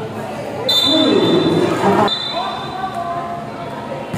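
Volleyball rally in a gymnasium with an echoing hall sound: the ball is struck sharply about two seconds in, amid loud shouting from players and spectators.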